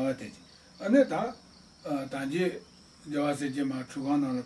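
A man speaking in short phrases with pauses between them, over a steady high-pitched tone.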